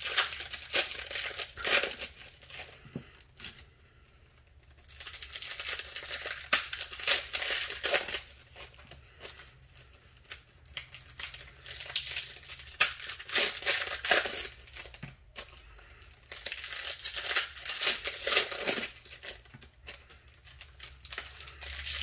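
Foil-plastic wrappers of Bowman Platinum baseball card packs being torn open and crinkled by hand, in several spurts of a few seconds with short pauses between them.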